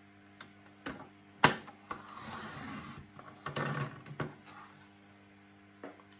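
Tonic Studios paper trimmer cutting a strip of black cardstock: a sharp click about a second and a half in, then the blade carriage rasps along its rail twice as the card is sliced, with a few lighter clicks around it.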